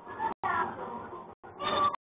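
A young child whining and crying in two drawn-out cries, the first falling in pitch and the second higher, heard through a security camera's thin-sounding microphone.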